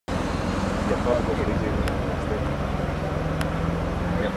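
BMW M5 E60's V10 engine running steadily as the car drives down the track at a distance, mixed with indistinct voices near the microphone.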